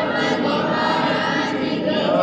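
A large congregation singing together in one steady chorus of many voices, the notes held and drawn out.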